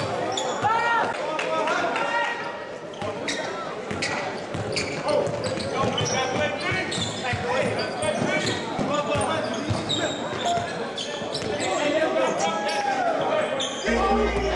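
Live sound of a basketball game in an echoing gym: the ball bouncing on the hardwood floor, sneakers squeaking on the court, and players' voices calling out.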